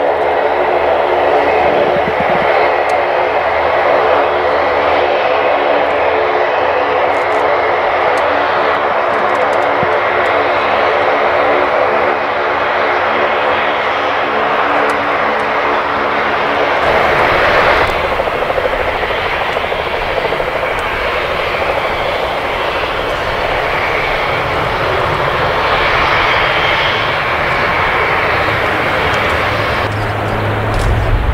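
Four turboprop engines of a Lockheed C-130J Super Hercules running at taxi power, with its six-bladed propellers giving a steady hum of several tones. After about seventeen seconds the tones fade and give way to a broader rushing noise with more low rumble.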